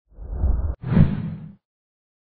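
Logo-reveal sound effect: a low whoosh that cuts off abruptly, followed at once by a second, brighter whoosh that fades away about a second and a half in.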